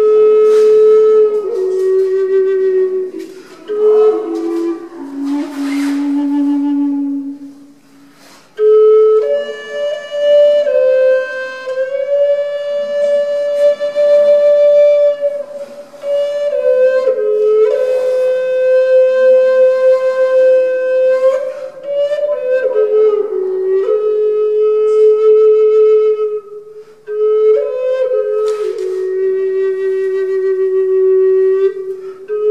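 Native American flute played solo: a slow melody of long held, wavering notes that step up and down, with a short pause about eight seconds in and a brief break for breath near the end.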